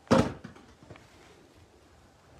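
A single short knock about a tenth of a second in, a plastic toy golf club striking a plastic ball.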